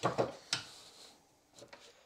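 A sharp metal click about half a second in, then a few faint knocks: a steel wing-stay bar and the bending tool being handled against a bench vise.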